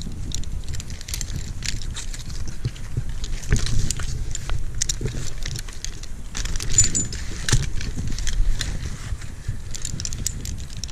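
Metal carabiners and rope-wrench climbing hardware clinking and tapping as they are handled, many small sharp clicks. Under them runs a steady low rumble.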